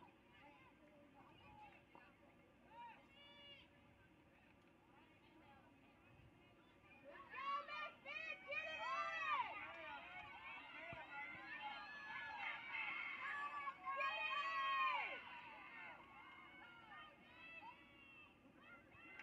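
Near silence for the first several seconds, then faint, distant shouting from several voices overlapping for about eight seconds, dying away near the end.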